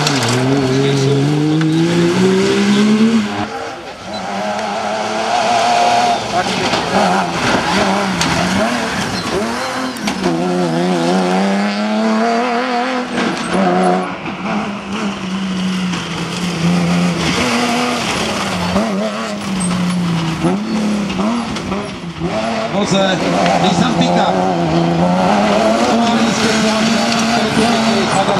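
Off-road cross-country rally car engines revving hard, the pitch climbing and dropping again and again with gear changes and throttle lifts as the cars drive a dirt stage.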